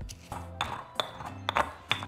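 Stone pestle striking inside a volcanic-stone molcajete, crushing onion and garlic into a paste: about four sharp knocks, each with a brief high ring, roughly two a second, over background music.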